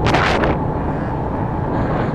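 Motorbike on the move: wind buffeting the microphone over a steady low engine and road rumble, with a loud gust of wind hiss in the first half second.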